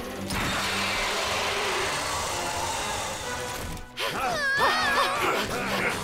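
Cartoon sound effect of a mechanical worm monster rising up: a dense grinding, whooshing mechanical noise for about three and a half seconds. It is followed by wavering high cries over background music.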